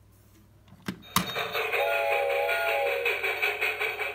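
Two sharp clicks about a second in, then a short electronic tune played through the small speaker of a LeapFrog musical counting train toy.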